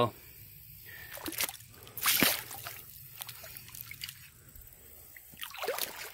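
Shallow creek water disturbed by wading: a few scattered splashes and sloshes, the loudest about two seconds in, over a faint trickle of the stream.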